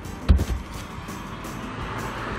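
A single dull thump about a third of a second in, as a fifth-wheel trailer's exterior storage compartment door is pressed shut on its latch, over background music.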